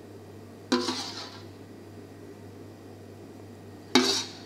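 A kitchen utensil clattering once against metal cookware about a second in, ringing off briefly, with a second sharp clink at the very end, over a steady low hum.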